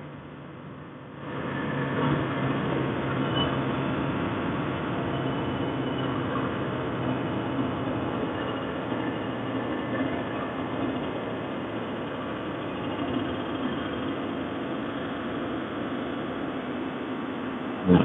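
Honda NSR 150 RR's single-cylinder two-stroke engine running at a steady cruise while riding, mixed with wind and road noise. Quieter for about the first second, then louder and steady.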